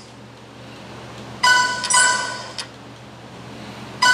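Two bright ringing dings, like a struck glass or small bell, about a second and a half in: the second comes about half a second after the first, and both have faded within about a second.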